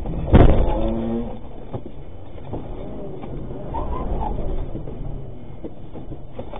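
Cabin noise of an armoured cash-in-transit vehicle on the move, engine and road noise heard through the dashcam. A loud bang comes about a third of a second in, followed by a held pitched sound lasting about a second, with a few sharper cracks later.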